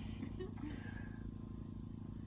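A steady low hum made of several even tones, with no change across the pause.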